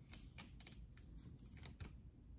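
Faint, irregular light clicks of a plastic scraper working over small hotfix rhinestones seated in a flocked rhinestone template, nudging stray stones back into their holes.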